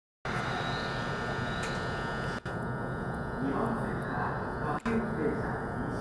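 Steady interior noise of an E233-7000 series electric commuter train car, with a cluster of steady high whining tones over a low rumble. The sound cuts out briefly twice, and voices come in over it from about halfway through.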